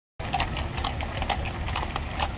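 Hooves of a column of mounted soldiers' horses clip-clopping on a paved road: many irregular, overlapping clops over a low rumble. The sound cuts in just after the start.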